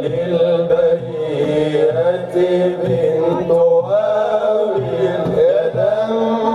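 Arabic devotional praise song (madih) chanted by voices over instrumental accompaniment, the sung line wavering and gliding in pitch.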